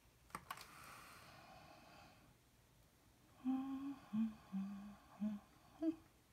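A woman humming a short run of about five steady notes to herself from about halfway in. Before it come two light clicks and a soft rustle.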